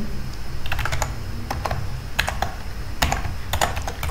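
Typing on a computer keyboard: a run of irregular key clicks as a line of code is entered.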